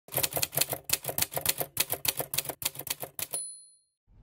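Typewriter sound effect: a fast run of key strikes, about seven or eight a second, ending with a short bell ding that fades out.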